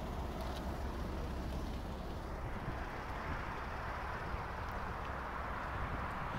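Steady, fairly quiet outdoor background noise: a low rumble with a faint hiss that swells a little past the middle, with no distinct events.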